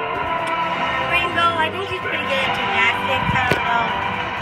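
Television commercial audio: music with voices over it, heard through the TV's speakers.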